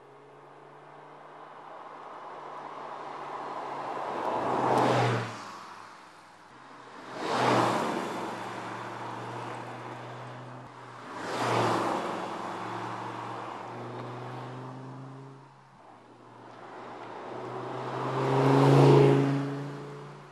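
Audi R8 Spyder's V10 engine driving past four times, each pass swelling to a loud peak and fading away, with the engine's hum carrying between passes; the last pass, near the end, is the loudest.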